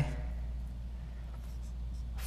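A marker writing on a whiteboard in a few short, faint strokes over a steady low hum.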